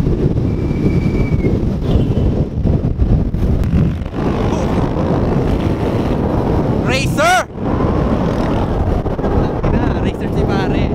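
Wind buffeting the microphone as a steady low rumble while riding pillion on a moving motorcycle. A short pitched cry, like a voice, comes about seven seconds in.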